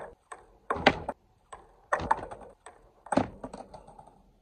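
Skateboard clattering on concrete: a series of sharp cracks and clacks about a second apart, the loudest about a second in, with weaker knocks between.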